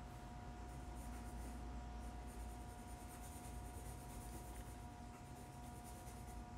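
Pencil scratching on sketchbook paper in quick, continuous drawing strokes, faint, starting about a second in. A steady faint hum runs underneath.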